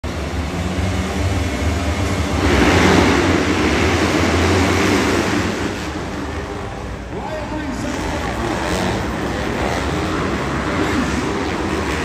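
A full gate of dirt bikes revving together at the start line. The sound swells to its loudest about two and a half seconds in as the pack launches, then continues as the bikes race around the track. Voices can be heard in the second half.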